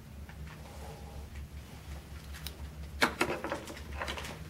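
Fly-tying handling: a metal bobbin holder wrapping thread around a hook held in a vise, heard as faint ticks and rustles, with a quick cluster of sharp clicks about three seconds in. A steady low hum lies underneath.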